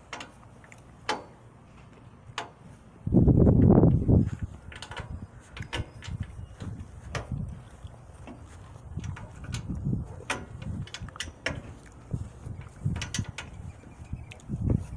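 Scattered metallic clicks and knocks of hand work on a go-kart's steel frame and drive parts, with the engine not running, and a loud low rumble lasting about a second near three seconds in.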